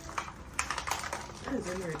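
Light, irregular clicking and tapping of small plastic containers and packets being handled on a countertop as a tight glitter container is worked open. A voice comes in briefly near the end.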